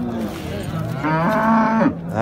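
Cattle mooing: one call of nearly a second, starting about a second in.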